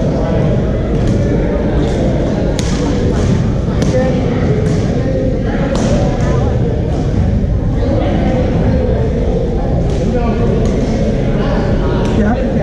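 Busy badminton hall: a steady, echoing din of many players' voices and movement, with a few sharp smacks of rackets hitting shuttlecocks at irregular moments.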